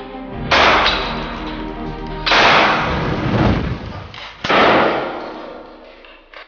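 Three loud handgun shots about two seconds apart, each trailing off in a long fading echo, over dark film music.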